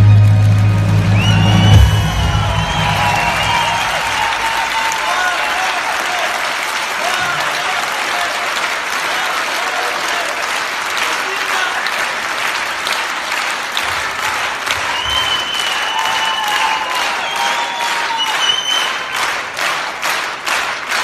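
Backing music ends about two seconds in, and a theatre audience applauds for the rest, with a few voices calling out from the crowd.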